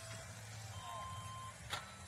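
Quiet hall background with a low steady hum; a faint steady tone sounds for under a second in the middle, and a single faint click comes near the end.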